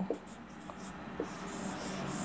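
Marker pen writing on a whiteboard: faint scratchy strokes of the felt tip, a little louder in the second half.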